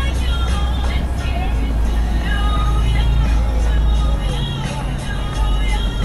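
Music and the chatter of passing pedestrians over a steady low rumble of road traffic crossing the bridge.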